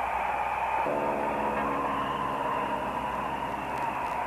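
Steady drone of an aircraft engine over a bed of hiss, a low hum swelling in about a second in and easing off after the middle.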